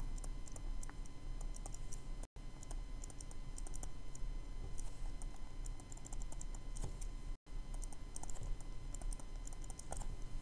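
Faint clusters of quick clicks and light scratches from a stylus tapping and writing on a tablet screen as words are handwritten, over a steady electrical hum. The sound cuts out completely for an instant twice.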